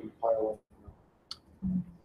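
A short wordless vocal sound near the start, a single sharp click a little over a second in, then a brief low hum.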